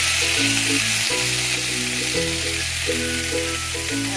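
Portobello mushrooms and sliced red onions sizzling in a hot cast iron grill pan, under background music of held chords over a bass note that changes every second or so.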